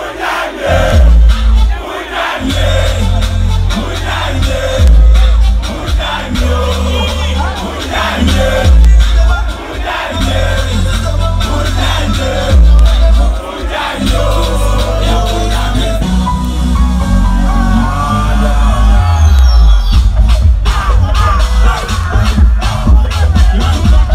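Loud live music with a heavy, pulsing bass beat over a concert sound system, with a large crowd shouting along.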